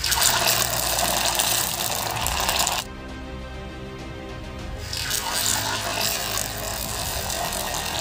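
Hot cooking oil sizzling as red toothpaste is squeezed into it and fries. The sizzle cuts off suddenly about three seconds in and comes back a little quieter about five seconds in, over steady background music.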